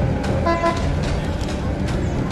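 Street traffic rumbling steadily, with a short vehicle horn toot about half a second in.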